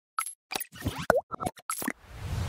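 Animated TV logo sting: a quick run of about eight short, cartoon-like plop and pop sound effects, one with a fast swoop in pitch about a second in.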